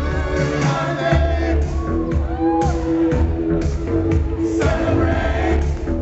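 Live band playing an upbeat pop song through a hall PA, with a steady bass line and a drum hit about twice a second.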